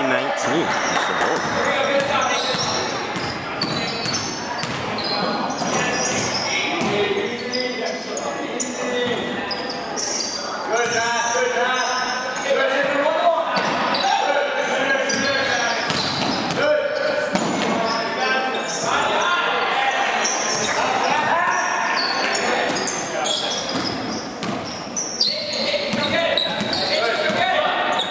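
A basketball dribbled and bouncing on a hardwood gym floor during live play, with players' and spectators' voices, short high sneaker squeaks, and echo from the large hall.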